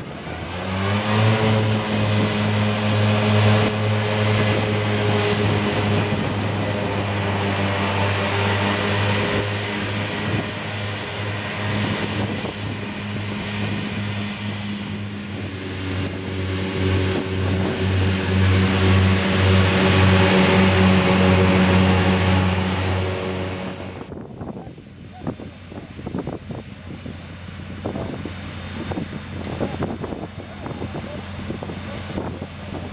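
Fendt 826 Vario tractor engine running at steady high revs, driving a Claas Disco 3100 FC triple disc mower through grass: a loud, steady drone over the whir of the cutting discs. About three quarters of the way through it stops abruptly, leaving a fainter sound with scattered ticks.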